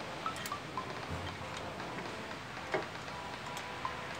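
Steady workshop hiss with scattered faint light clicks and several short, high ringing pings, like small metal parts clinking.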